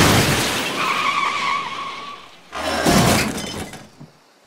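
Cartoon car crash sound effect: a loud crash with breaking glass at the start that dies away over about two seconds, then a second crash about two and a half seconds in that fades out.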